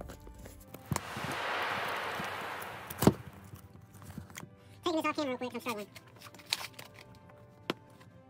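Cardboard shipping box being forced open with a utility knife and bare hands: a rasp of about two seconds of cardboard and packing tape tearing, then a sharp snap about three seconds in, and scattered clicks and knocks.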